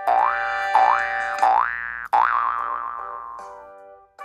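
Cartoon 'boing' spring sound effects: three quick rising boings, then a fourth that wobbles in pitch and fades away.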